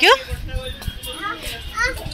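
Young children's voices and chatter, with a couple of short, high, rising calls near the end.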